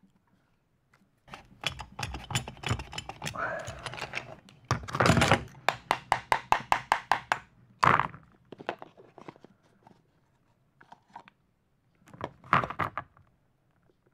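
Metal clicks and knocks from the SDS chuck of a Makita HR2400 hammer drill being handled and worked by hand, with a drill bit jammed in it. A dense run of clicks comes first, then quick even clicks at about six a second for a couple of seconds around the middle, a single sharp knock about eight seconds in, and a short cluster of clicks near the end.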